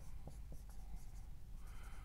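Dry-erase marker writing on a whiteboard: faint strokes of the felt tip across the board, with a few light ticks as it lifts and lands.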